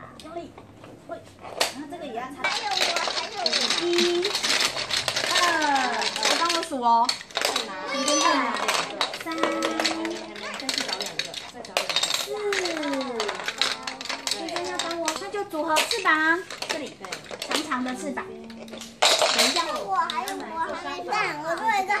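Young children chattering, with occasional clicks and clatter of plastic building blocks being handled and pressed together.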